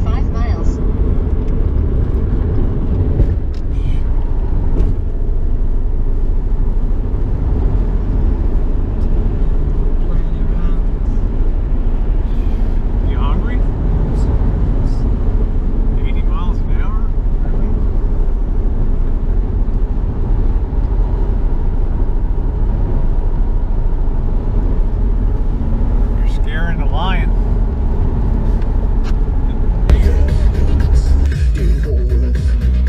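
Steady low rumble of road and engine noise inside a moving car's cabin.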